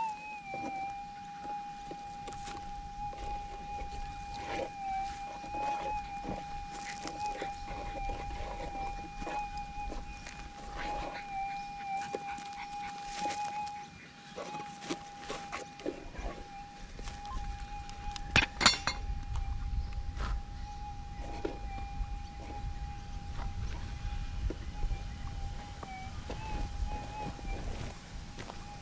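Minelab GPX 6000 metal detector's steady threshold hum, a single mid-pitched tone that briefly rises in pitch near the start and wavers a few times as the coil is swept over and around a dug hole in mineralised goldfield ground. A short sharp burst of clicks about two-thirds of the way through is the loudest moment.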